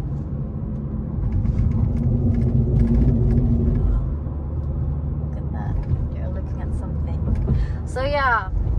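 Inside the cabin of a 2020 Hyundai Veloster Turbo on the move: low road and engine rumble from its turbocharged 1.6-litre four-cylinder. The engine note grows louder from about one and a half to four seconds in, then eases off.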